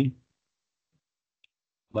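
A short pause in speech: a word trails off just after the start, then near silence with a single faint tick about a second and a half in, and talking resumes at the very end.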